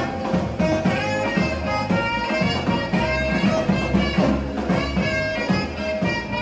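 Live band music played through loudspeakers from the platform of a festival giglio tower, with a steady drum beat and held melody notes.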